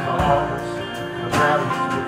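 Live acoustic band music: strummed acoustic guitars over upright bass and drums, with chords struck about a quarter second in and again at about a second and a half.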